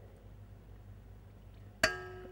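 Quiet room tone, then near the end a single sharp clink as the glass olive-oil bottle knocks the rim of the stainless steel mixer bowl, which keeps ringing.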